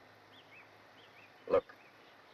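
Birds chirping faintly: a series of short rising-and-falling chirps, about three a second, over a steady background hiss.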